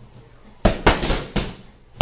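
A slam ball thrown down onto a gym floor mat, hitting and bouncing: three sharp knocks in under a second, starting a little after half a second in.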